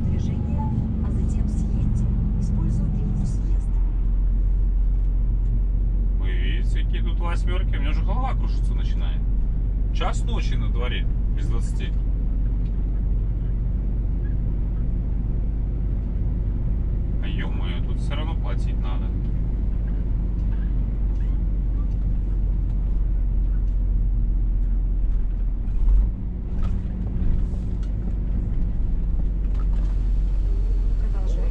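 Scania S500 truck's diesel engine running while driving, heard inside the cab as a steady low drone, with a single low thump late on.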